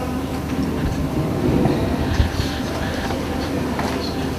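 Steady low rumble of background room noise with a faint hum.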